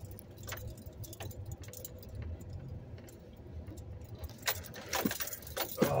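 Vehicle engine running with a steady low rumble, heard from inside the cab, with scattered light clicks and rattles that grow busier near the end.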